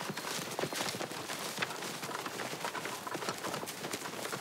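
Footsteps of several people crunching through dry fallen leaves and twigs on a dirt path: a dense, irregular patter of crackles.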